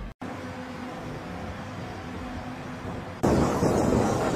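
Steady background hum of a hangar with a faint held tone. About three seconds in it cuts abruptly to louder, rougher outdoor flightline noise.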